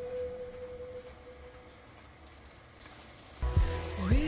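Chopped onions sizzling softly as they fry in a pot. Background music fades out in the first second, and another song starts abruptly near the end.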